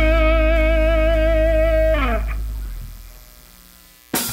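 Electric guitar holding a sustained note with vibrato over a low bass note. About two seconds in, the pitch slides down and the sound dies away.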